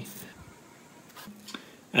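Quiet background hiss in a pause between speech, with a short faint hum a little past halfway; no distinct sound.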